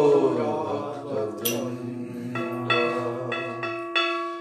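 A man singing a Vaishnava devotional chant in long held notes over a steady drone, with one sharp bright click about one and a half seconds in.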